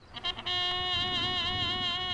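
A bugle sounding a morning call: a brief lead-in, then one long held note with a slight waver.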